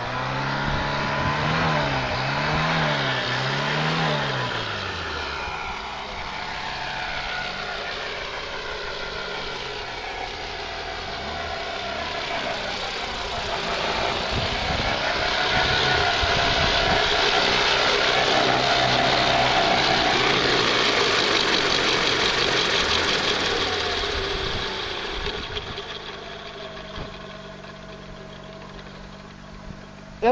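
FunCopter V2 electric RC helicopter flying: whine of its motor and spinning rotors, the pitch rising and falling with throttle. Loudest in the middle while it hovers close, fading over the last few seconds.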